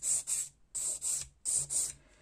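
A hand nail file rasping across a long artificial stiletto nail in quick back-and-forth strokes. The strokes come in three short bursts with brief gaps, as the refilled nail is shaped.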